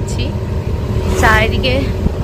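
Steady low rumble and road noise of a moving vehicle, with a person's voice speaking briefly about a second in.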